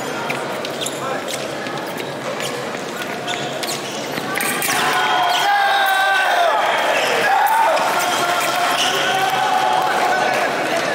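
Foil fencing exchange on a piste in a large hall: a run of sharp clicks and thuds from blades and stamping footwork, then, about four to five seconds in as a touch is scored, loud shouting voices that carry on to the end.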